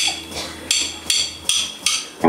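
A drummer's count-in: sharp clicks, one on its own at first and then three more in quick, even succession.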